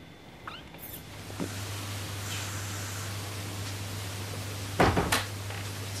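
A steady low electrical hum with hiss, broken near the end by a quick cluster of two or three loud knocks, like a cupboard or door banging shut.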